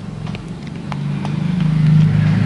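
A low, steady motor-vehicle engine hum that grows louder from about a second in, with two faint clicks in the first second.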